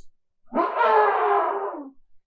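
A woman's voice imitating an elephant's trumpet: one long, loud call that falls slightly in pitch.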